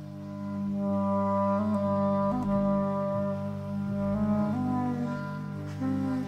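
Clarinet ensemble music: a slow melody of long held notes stepping up and down over sustained low notes, swelling in loudness over the first second.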